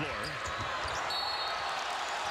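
Arena crowd noise at a basketball game, with a referee's whistle blown briefly about a second in to call a reach-in foul.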